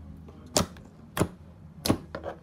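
Clear slime pressed and squished by fingers, trapped air popping out in three sharp pops about two-thirds of a second apart.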